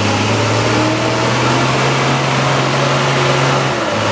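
Engine of a bobbed M35-series military 2½-ton truck (deuce) pulling through deep mud, holding a steady low note under load that falls away just before the end.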